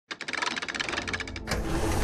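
Sound effects for an animated logo intro: a rapid run of ticking clicks, about fifteen a second, then about a second and a half in a whoosh swells up and leads into the intro music.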